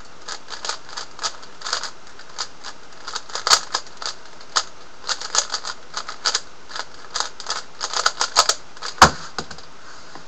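A plastic 3x3 Rubik's cube being turned rapidly in a speedsolve: a fast, irregular run of clicks and clacks from the layers snapping round. About nine seconds in comes one louder, deeper knock as the solve ends and the cube is set down on the Stackmat timer.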